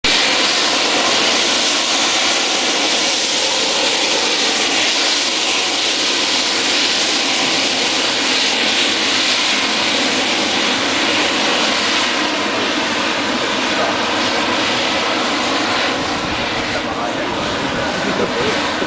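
Helium gas rushing out of an MRI magnet's quench vent pipe during a magnet quench: a loud, steady hiss that eases a little in the last few seconds.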